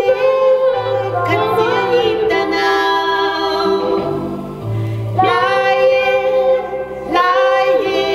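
A woman and a man singing a gospel song together, with several long held notes, over electronic keyboard accompaniment with low bass notes.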